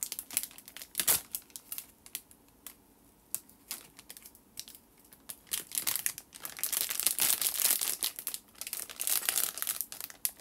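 Plastic snack packet crinkling in the hands: a sharp crackle about a second in, scattered crackles after, then dense, continuous crinkling in the second half.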